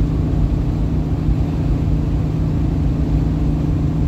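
A car driving at a steady speed, heard from inside the cabin: an even rumble of engine and tyre noise with a constant low hum.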